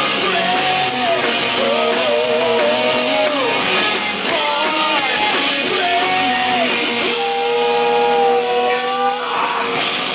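Live rock band: a male singer sings over electric guitars and drums, his melody rising and falling, with a long held note about seven seconds in.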